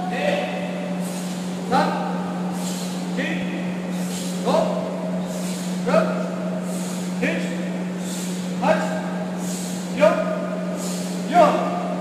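Karate students' drill shouts: short voiced calls repeating in an even rhythm, about one every second and a half, nine in all, each marking a technique. A steady low hum runs beneath them.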